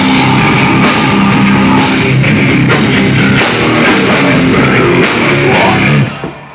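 Hardcore band playing live: heavily distorted electric guitar over a pounding drum kit, with crash-cymbal hits about once a second. The song cuts off abruptly at the very end.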